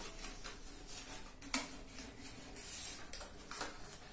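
Faint rustling and a few light clicks from hands working at the strings of a Celtic harp while it is being prepared, with no notes played.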